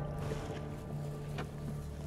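Mercury outboard motor idling steadily, a low even hum, with background music over it.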